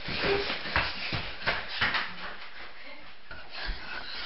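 Hurried footsteps and movement: a quick, irregular run of thuds and scuffs with clothing rustling, busiest in the first two seconds and then thinning out.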